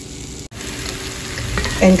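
Food sizzling in a cast iron skillet: a soft, steady sizzle under the lid, then a sudden cut about half a second in to a louder sizzle that builds toward the end.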